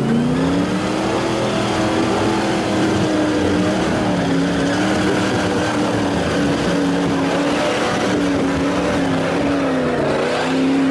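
Engine of a Nissan off-road 4x4 working hard as it drives through a deep, muddy rut; the revs climb over the first second and are then held high, rising and dipping a little.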